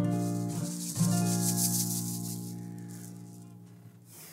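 Acoustic guitar chords: one struck at the start and another about a second in, each left to ring and slowly fade. A shaker rattles over them.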